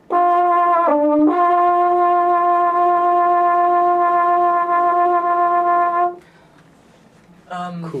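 French horn played with shake vibrato: one held note, with the instrument shaken while it sounds. The note starts cleanly, dips briefly in pitch about a second in, then holds for about five seconds and stops suddenly.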